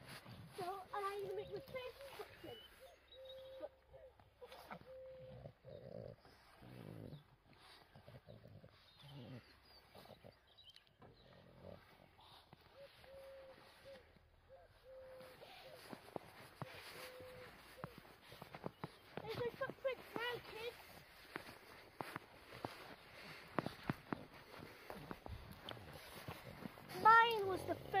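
A young child's voice making wordless sounds: long held hummed notes and short high exclamations, the loudest a high call near the end. Scattered soft knocks and steps of boots on a snowy playground ladder run through it.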